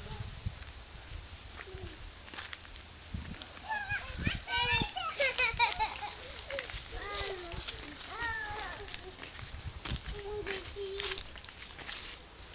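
Faint voices of people talking a short way off, a small child's among them, in several short stretches over quiet outdoor background.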